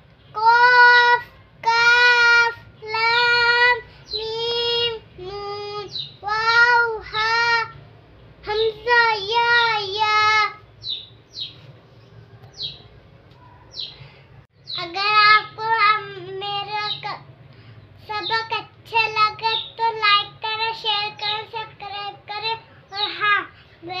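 A young girl reciting Arabic letters aloud from a Qaida reading primer in a sing-song chant, each syllable drawn out. She pauses for about three seconds midway, then carries on.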